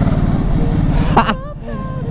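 Ducati Hypermotard's L-twin engine running as the motorcycle rides along, a fast, low pulsing heard from the rider's position. About a second in there is a sharp click, and the engine then drops quieter.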